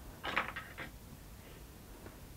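A few faint light clicks and rustles of hands working thread around the small nails of a string-art board, in a quick cluster in the first second.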